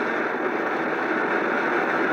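Steady hum of a car's engine and road noise heard from inside the cabin while driving.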